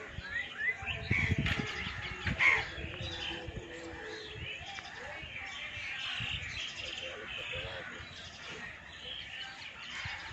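Birds chirping and calling: many short chirps throughout. A few low thumps come in the first couple of seconds, the loudest about two and a half seconds in.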